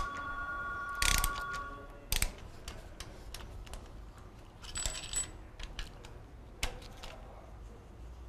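Hand wrench and ratchet loosening the camshaft bolts on a BMW N63 engine: scattered clicks and metal clinks, with a brief steady ringing tone over the first two seconds.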